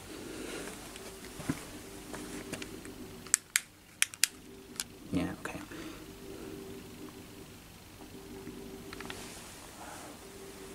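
Sharp metallic clicks and knocks of a wooden sliding door's latch and pull being handled. Four come close together about three and a half to four and a half seconds in, and a heavier knock follows about five seconds in, over a steady low hum.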